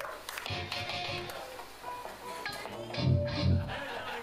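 Electric guitar and bass noodling between songs: a few scattered, unconnected notes, with a louder pair of low bass notes about three seconds in.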